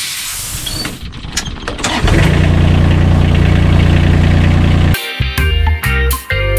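A corded power tool grinding a chainsaw chain in a vise, a loud hissing grind for about two seconds. It then gives way to a louder, steady engine sound that stops abruptly about five seconds in, when guitar music takes over.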